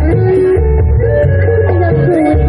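Live dangdut koplo band playing loudly through a PA: a steady pulsing bass under a lead melody that bends and slides in pitch.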